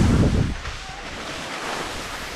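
Skis scraping and chattering over chopped-up, tracked snow during a downhill run, a steady hiss mixed with wind buffeting the microphone. A louder rumbling scrape comes in the first half second, then settles to a steadier hiss.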